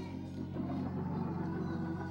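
Soft background music: sustained low chords held on a keyboard instrument, swelling slightly about half a second in.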